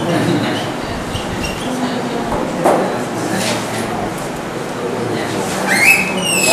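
Whiteboard marker writing on a whiteboard, ending in a short rising high-pitched squeak near the end, over a low murmur of voices in the room.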